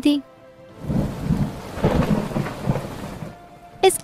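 Thunderstorm sound effect: a low rumble of thunder over rain, swelling in about a second in and fading out near the end.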